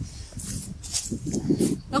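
Soft laughter in short breathy bursts, over wind noise on the microphone.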